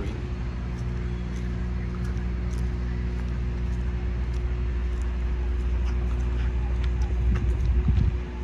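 A steady low mechanical hum with a fainter steady higher tone above it, with a few faint light clicks scattered through.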